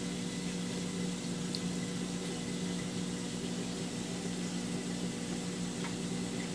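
Steady hum of aquarium pumps with water running and bubbling through the tank system.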